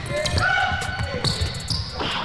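A basketball being dribbled on a gym's hardwood floor in repeated low bounces, with a couple of brief high squeaks.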